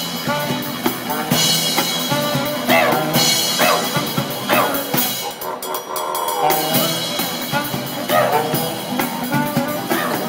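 Street band playing upbeat swing-style music on saxophone, acoustic guitar, upright double bass and cajón, with a steady beat and several quick rising slides in the middle.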